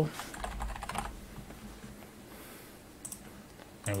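Computer keyboard typing: a quick run of keystrokes in the first second, then a couple of single clicks about three seconds in.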